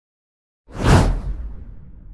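A whoosh sound effect that starts suddenly about two-thirds of a second in and fades out with a low rumble over the next second and a half.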